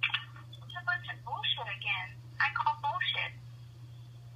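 A person's voice talking over a telephone line, thin and narrow in tone, for about three seconds, with a steady low hum underneath.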